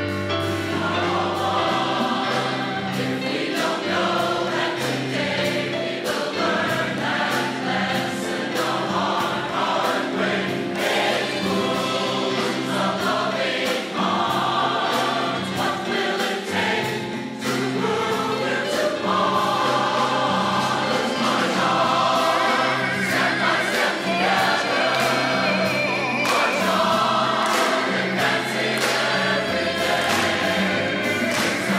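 Choir singing with instrumental accompaniment over a steady beat.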